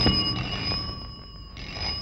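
Desk telephone bell ringing in two short bursts, the second about a second and a half after the first.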